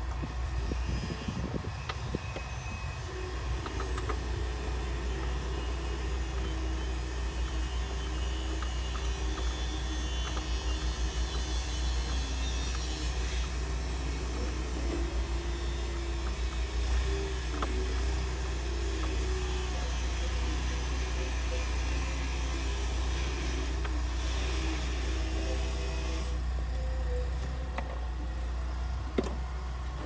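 Steady low vehicle rumble, with a wavering hum through most of it and a few faint clicks and knocks from hand tools loosening bolts behind a truck's dashboard.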